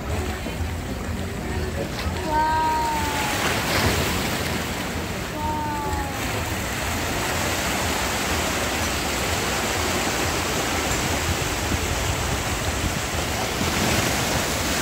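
Sea water washing and lapping against rocks, a steady rushing surf that swells about two seconds in. Two short falling cries come through it, a few seconds apart, in the first six seconds.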